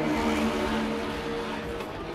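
Live band playing loudly through the PA: held notes under a dense, noisy wash that swells in the first second and eases off toward the end.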